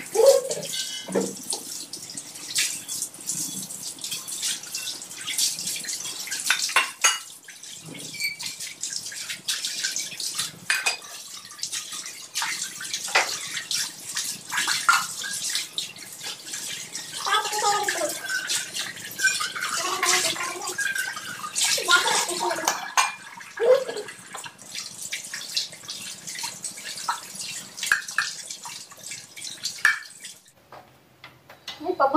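Water running from a kitchen tap, with clinks and knocks of utensils and dishes throughout, and a voice for several seconds in the second half.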